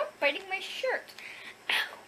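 A young girl's wordless, breathy vocal sounds: short cries in the first second and a brief breathy burst near the end, as a dog climbs on her.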